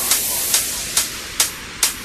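Electronic dance music intro: a steady hiss of synthesized noise, cut by short sharp hits about every half second, easing off somewhat in the second half.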